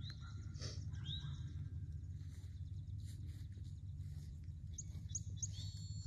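Outdoor birds chirping several times in short, high, rising calls, with a cluster of them near the end, over a steady low rumble.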